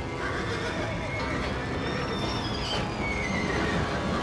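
Horse whinnying in long high calls that fall in pitch, one about a second and a half in and another near the end, over a steady low rumbling noise.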